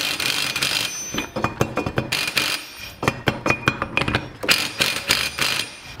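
Cordless impact wrench hammering on a differential pinion nut in short, uneven bursts, drawing the pinion in while there is still play before the crush sleeve is reached.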